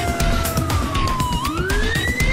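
An emergency vehicle siren wailing: its pitch slides slowly down, then sweeps back up about one and a half seconds in. Under it runs background music with a steady beat.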